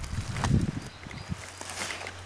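A few soft footsteps with rustling on forest-floor leaf litter and twigs, the strongest step about half a second in.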